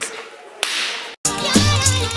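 A short, sharp swoosh that cuts off suddenly, then background music starts with a bass line and a melody a little past halfway through.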